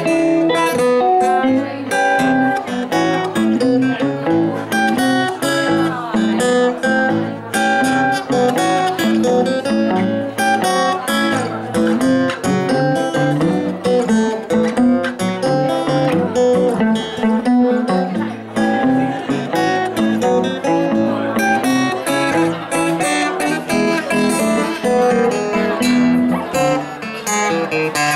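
Acoustic guitar and archtop electric guitar playing a blues instrumental break together, a steady run of picked notes with no singing.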